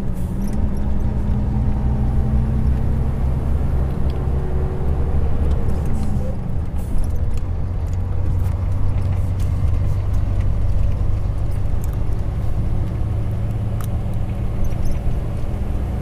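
Heavy diesel truck engine running steadily under way, heard from inside the cab with road noise, as a continuous low drone; its pitch dips briefly about six seconds in.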